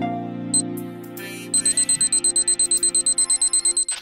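Intro music: a held synth chord with a short click about half a second in, then from about one and a half seconds a rapid, even run of high electronic beeps like an alarm clock, cutting off just before the end.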